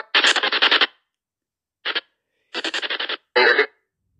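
Spirit box app on a phone sweeping through radio frequencies, playing choppy, garbled fragments of audio through the phone's speaker. There are four bursts cut off by dead silence: one of about a second at the start, a brief blip near the middle, and two short bursts close together near the end.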